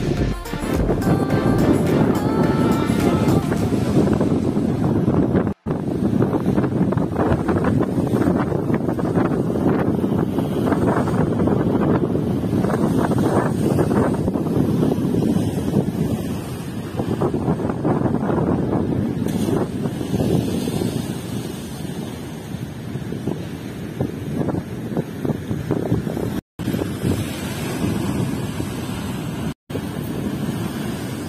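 Strong wind buffeting the microphone over rough surf, with waves breaking and splashing against the shore. Faint background music fades out in the first few seconds, and the sound cuts out briefly three times.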